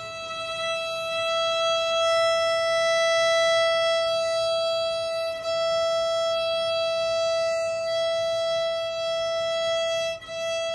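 Violin's open E string bowed in long, steady notes, one unchanging pitch, with a bow change about five and a half seconds in.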